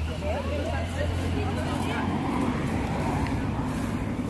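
Street ambience: a low, steady traffic rumble with faint voices of people nearby, no clear words.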